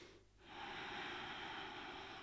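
A woman's deep, slow breath out through the nose: a steady airy exhale that starts about half a second in and runs about two seconds.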